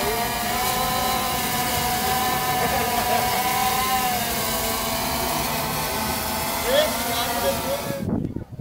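Quadcopter drone hovering: its electric motors and propellers make a steady high whine of several tones whose pitch wavers slightly as it holds position. The whine stops abruptly at the very end.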